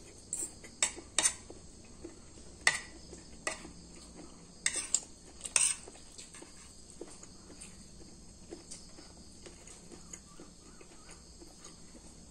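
Metal spoon and fork clinking and scraping against a ceramic plate while corn kernels are scooped up, a string of sharp clinks through the first half, then only light taps.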